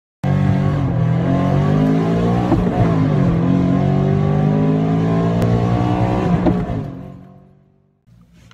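Loud car engine running and revving, its pitch dipping and climbing again twice, starting abruptly and fading out over the last second.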